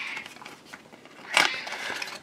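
Quiet room tone with a brief soft rustle of handling noise about one and a half seconds in.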